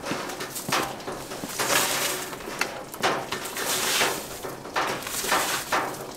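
Snow being scraped and pushed across a hard terrace floor with a long-handled snow scraper, in about five separate swishing strokes.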